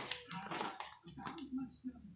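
Low talking, with a few light clicks near the start from a plastic heart-shaped candy box being handled.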